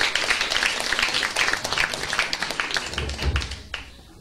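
Applause from a small audience and panel, many hands clapping irregularly, thinning out and dying away near the end, with a low thump shortly before it stops.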